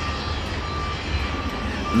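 Steady wind noise with a low rumble, and a vehicle reversing alarm beeping steadily a little under twice a second.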